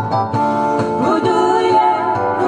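A woman singing into a microphone over acoustic guitar accompaniment, with a held note and a pitch bend about a second in.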